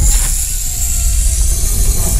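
Logo sting sound effect: a loud rumbling, crackling noise that starts abruptly out of silence and carries on steadily.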